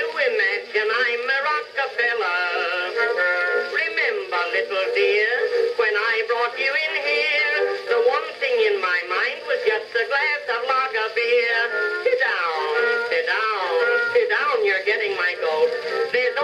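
Music from an Edison Blue Amberol cylinder record playing on an Edison phonograph: an early acoustic recording with a thin tone, no deep bass and no high treble.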